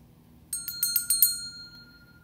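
Small brass hand bell shaken, its clapper striking in a quick run of about eight strikes starting about half a second in. Its clear tone then rings on and slowly fades.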